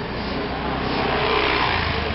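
Busy street traffic: a motor vehicle's engine grows louder as it passes close, loudest about a second and a half in, with people's voices in the background.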